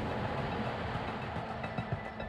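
Steady rushing noise of an F-15 fighter jet in flight, heard from the cockpit: engine and airflow noise with a faint low hum. Faint background music comes in near the end.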